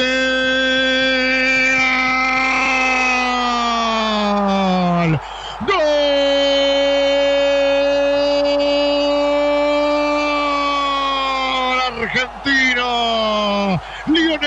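A male Spanish-language radio football commentator gives the long drawn-out goal cry for a penalty just scored. He holds one pitch for about five seconds, letting it fall at the end, takes a quick breath, then holds a second long note for about six more seconds.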